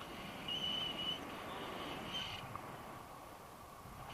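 Wind rushing over the camera microphone as a tandem paraglider flies. A high steady tone sounds about half a second in for under a second, with a shorter, weaker one about two seconds in.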